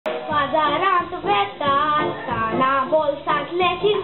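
A boy singing a Konkani song into a stage microphone, his voice wavering in pitch as he holds the notes.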